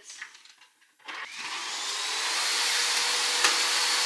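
Vacuum cleaner switched on about a second in, its motor winding up with a rising whine and then running steadily.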